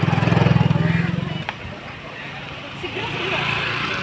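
A motorcycle passing close by, its engine's rapid exhaust pulses loudest about half a second in and fading away after about a second and a half, followed by street noise with people's voices.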